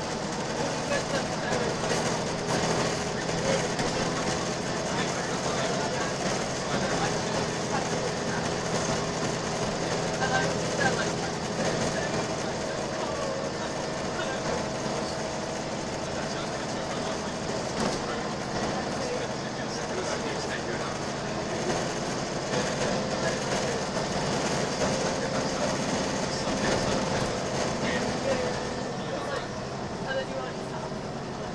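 Inside a Volvo B10BLE single-deck bus running at speed: steady engine and road noise with a held whine that drifts slowly up and down in pitch.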